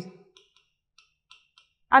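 A few faint, short clicks of a stylus tip tapping on an interactive display screen while writing.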